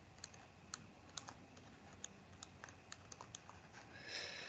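Near silence broken by faint, irregular light clicks, several a second, from a computer input device in use as writing is added on screen.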